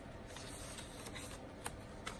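Paper pages of a handmade junk journal being turned and handled: a faint rustling of paper with a couple of light ticks.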